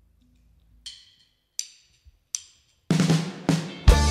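A drummer counts in with three sharp clicks of the drumsticks about three-quarters of a second apart. The full band then comes in together near the end, with drum kit, bass, electric guitar and trombone.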